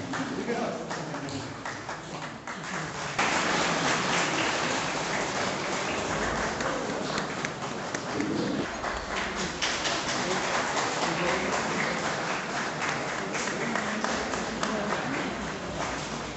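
An audience applauding, rising suddenly about three seconds in and going on steadily, with voices talking underneath.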